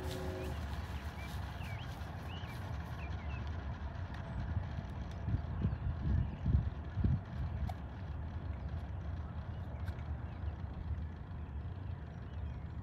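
Footsteps on asphalt passing close by, several soft low thumps in the middle, over a steady low outdoor rumble.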